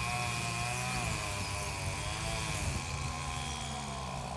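Petrol strimmer running in the distance, its engine pitch wavering up and down slowly.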